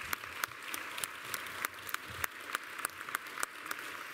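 Audience applauding: many hands clapping at once in a steady, dense patter.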